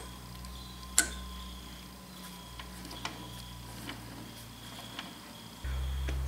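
Quiet low hum with a few faint clicks about a second apart, the first of them the clearest. The hum grows louder shortly before the end.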